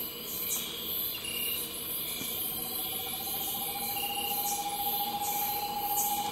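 A screech-owl singing a long, even, low trill that starts about two seconds in and carries on, over a chorus of night insects pulsing about twice a second.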